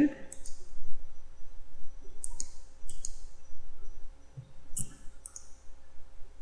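Computer mouse button clicking a few times, single and paired clicks spaced a second or two apart, over a faint steady hum.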